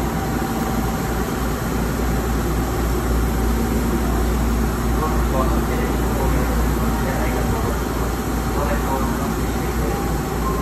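Steady low rumble and hum of a stationary Hankyu train and the ventilation of an underground platform, with faint voices in the background.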